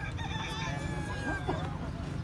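A high, drawn-out call sounds in the distance for about a second and a half, over a steady low hum of the surrounding crowd and ground noise.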